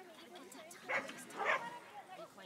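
A dog barking twice, about a second in and again half a second later, over people talking.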